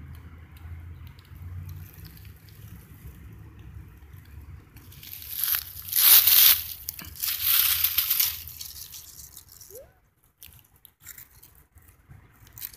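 Dry fallen leaves crunching and rustling in two loud bursts about halfway through, over a faint low rumble.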